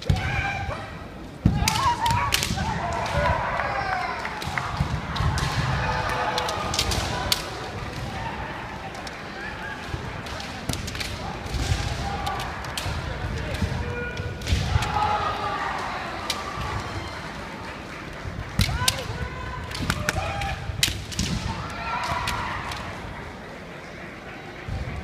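Kendo bout: bamboo shinai clacking and striking in several flurries, feet stamping on a wooden floor, and the fencers' shouted kiai.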